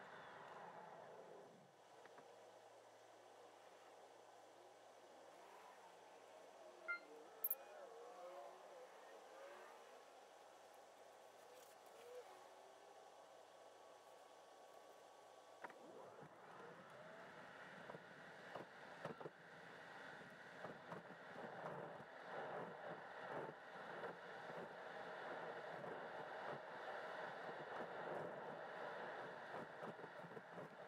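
Faint cabin noise inside a Tesla electric car driving itself, with no engine sound: a low hush of tyres and road for the first half, two short clicks about seven seconds in, then tyre and road noise building from about halfway as the car picks up speed.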